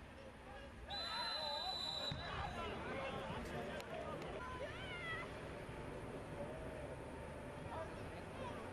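Referee's whistle blown once, a steady shrill blast about a second long starting about a second in, stopping play. Shouting voices from the pitch follow.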